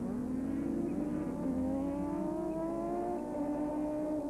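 Racing saloon car engine at full throttle on the circuit, its note climbing steadily as the car accelerates through a gear past the trackside camera.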